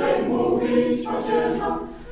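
Mixed choir of women and men singing a Polish Christmas carol a cappella, holding sustained chords; the chord changes about a second in and the phrase fades out near the end.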